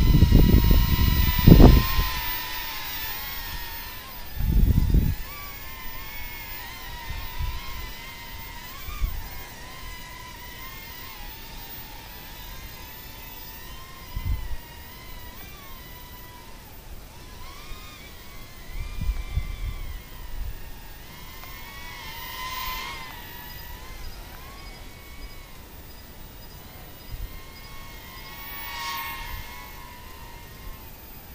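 Small toy quadcopter's motors and propellers whining: a high tone that wavers up and down with the throttle. It is loudest at first, as the drone flies low past, then fainter as it climbs away, with a few low thumps near the start.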